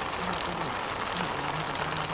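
A steady, dense hiss like rain or running water, unchanging in level, with low, indistinct speech buried beneath it.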